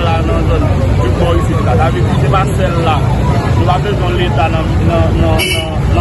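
Voices talking over a low, steady engine rumble, with one short sharp noise about five and a half seconds in.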